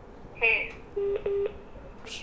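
A pair of short steady electronic telephone beeps about a second in, heard over a phone line, just after a brief voice sound.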